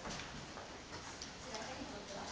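Faint, indistinct voices in a large hall, with a few light irregular ticks.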